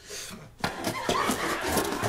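Cardboard box being handled and wrestled with, making rustling, scraping and small knocks from about half a second in.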